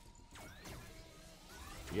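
Sound effects of Thunderkick's Zap Attack online video slot: swooshing effects that glide down and then up in pitch over quiet game music, as alien symbols land during the free-spins round.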